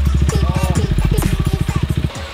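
KTM RC 390's 373 cc single-cylinder engine idling, a fast, even pulsing that stops abruptly at the end.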